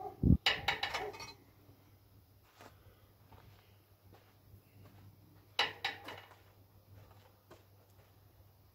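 Two short bursts of clattering knocks, one just after the start and another about five and a half seconds in, over a faint steady hum.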